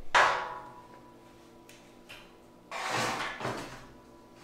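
A metal knock on the steel lift frame that rings and dies away, then a short scraping noise about three seconds in.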